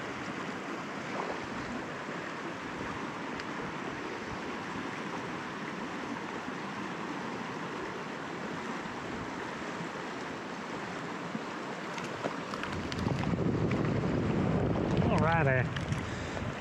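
Steady rush of river water flowing over a riffle. Near the end a louder low rumble comes in, like wind buffeting the microphone, with a brief wavering pitched sound just before the end.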